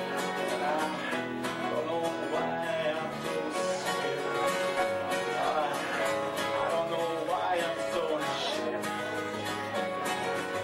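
Live band playing a country-style song: strummed acoustic guitar with electric bass and keyboard, steady and rhythmic.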